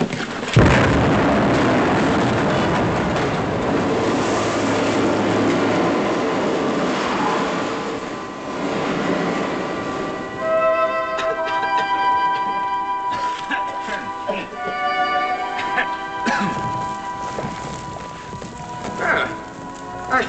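Staged mine blast in a TV soundtrack: a sudden explosion about half a second in, followed by several seconds of rumbling as rock and timber come down. From about ten seconds in, dramatic orchestral music takes over.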